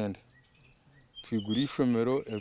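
A man's voice talking, broken by a pause of about a second in which a few faint bird chirps are heard before he speaks again.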